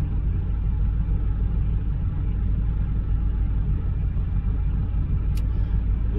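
Steady low rumble of a vehicle idling, heard from inside its cab, with one brief click a little after five seconds.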